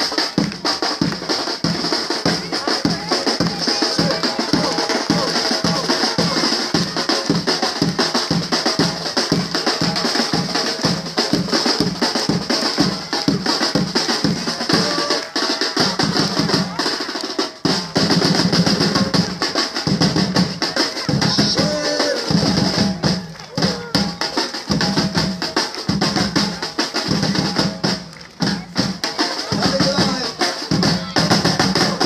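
A batucada percussion group drumming: bass drums keeping a steady pulse of about two to three beats a second under dense snare-drum patterns. About halfway through, the bass pattern changes, with a couple of brief breaks.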